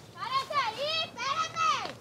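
A high-pitched voice calling out loudly in about three drawn-out phrases whose pitch rises and falls.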